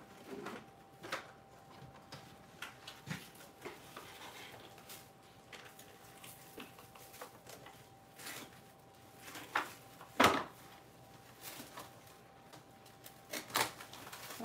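Scattered knocks and clicks of household objects being handled, with a sharp knock about ten seconds in the loudest, over a faint steady high-pitched hum.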